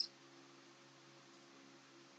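Near silence: room tone with faint hiss and a faint steady electrical hum.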